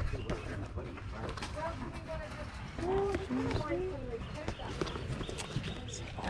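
Indistinct voices talking in the background, with scattered clicks and rustles of a cardboard toy box being handled.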